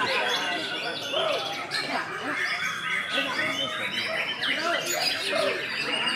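A caged white-rumped shama singing, its quick whistles and chatters overlapping with the songs of other caged songbirds and the voices of people.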